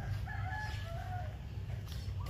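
A faint, drawn-out bird call in a few level pitch steps, lasting about a second, over a steady low rumble.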